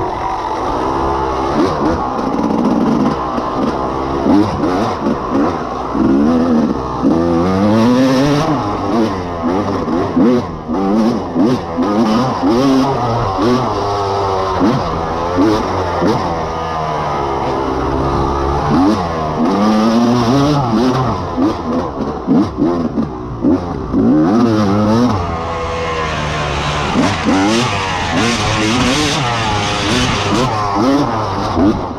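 Off-road dirt bike engine ridden hard, revving up and dropping back again and again every second or two as the rider works the throttle and gears. Frequent short knocks and clatter run through it.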